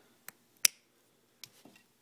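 Household scissors snipping the fanned-out ends of a Cat5e cable's eight copper conductors, trimming them straight and even: a few short, sharp snips, the loudest about two-thirds of a second in.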